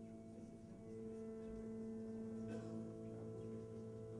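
Quiet, sustained guitar drone: several steady held notes ringing together, with the chord shifting to new notes about a second in, and a faint click midway.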